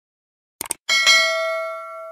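A quick pair of clicks, then a bright notification-bell ding, struck twice in quick succession and left ringing with a slow fade. It is the sound effect of a subscribe-button and notification-bell animation.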